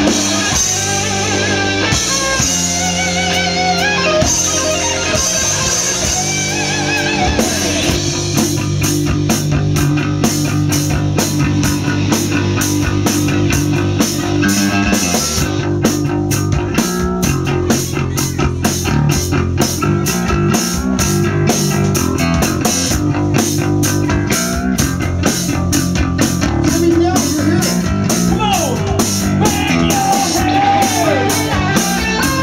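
A live rock band plays loudly: electric guitar, electric bass and drum kit. A wavering lead guitar line runs over held bass notes, and about eight seconds in a steady, driving cymbal beat comes in and keeps going.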